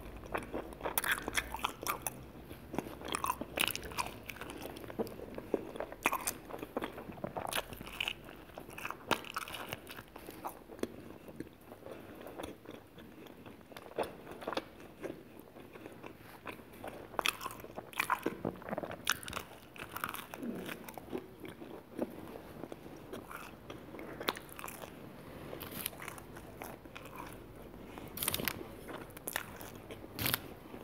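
Close-miked eating of cheese pizza topped with fries: biting and chewing, with frequent crisp crunches of the baked crust coming irregularly all the way through.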